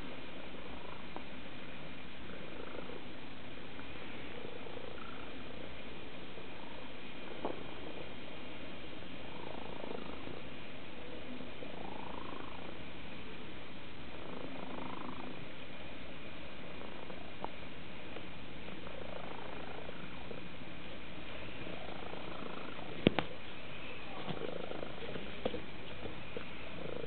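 A domestic cat purring steadily, close to the microphone, with one sharp click near the end.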